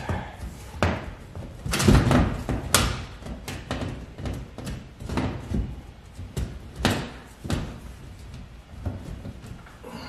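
Galvanized sheet-metal duct elbow knocking, clunking and scraping as it is pushed and twisted against a hole cut in wall board. The hole is slightly too small for the elbow, so it does not slide in. The knocks come at uneven intervals, the loudest about two seconds in.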